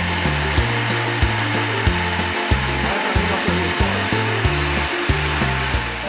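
Electric countertop blender running steadily at speed, whirring as it beats a liquid cake batter of eggs, coconut milk and sugar, stopping near the end. Background music with a bass line and steady beat plays underneath.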